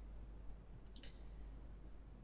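Quiet room tone with a brief, faint click a little under a second in.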